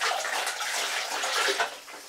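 Water running and splashing through a bag of mashed grain in a colander into the brewing pot: sparging, rinsing the last sugars out of the grain. The splashing starts suddenly, runs steadily and tails off near the end.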